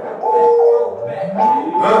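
Held synth chords of a hip-hop backing track playing loudly over a club PA, stepping between notes, with a rising siren-like sweep that starts a little past a second in and climbs into the next song.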